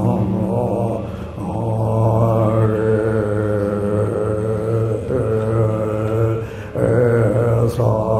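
A man chanting a Tibetan Buddhist prayer in a low, steady voice, drawing out long held notes, with short breaks for breath about a second and a half in and again near the end.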